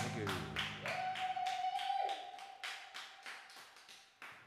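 Clapping from a few pairs of hands as a song ends, about four or five claps a second, fading away over the few seconds. Over the first two seconds a single held tone, a cheer or whistle, sounds with the clapping and then drops off.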